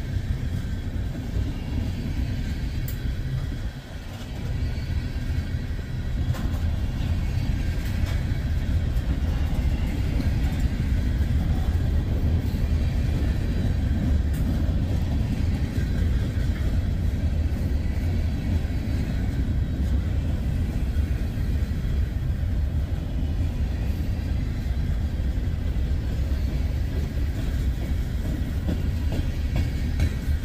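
Freight train of tank cars and covered hoppers rolling past, a steady rumble of wheels on the rails that dips briefly about four seconds in.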